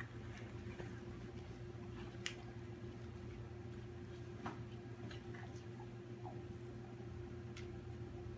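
Faint, scattered clicks and small handling noises of scuba gear as the BCD's inflator hose is picked up and its end held to a connector, over a steady low hum.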